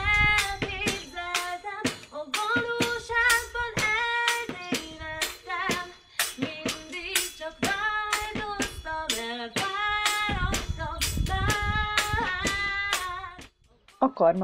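A woman singing a pop song to sharp, clicking percussion struck on an improvised drum kit of a wine bottle, a Christmas tree stand and a toolbox, with deeper hits coming in now and then. The music stops about half a second before the end.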